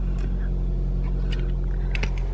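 Car engine idling, heard from inside the cabin: a steady low hum.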